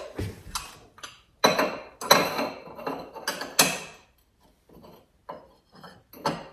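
Fine porcelain teacups and saucers clinking against each other and the shelf as they are set in place, with a run of sharp clinks through the first four seconds and then a few fainter taps.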